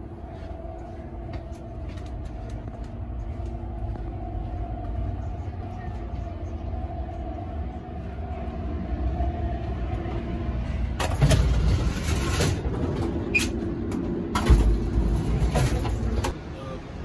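Moving passenger train heard from inside a car: a steady low rumble with a held hum. About eleven seconds in it turns much louder and harsher, with rushing wheel and track noise as the passage between cars is crossed, and it surges again near the end.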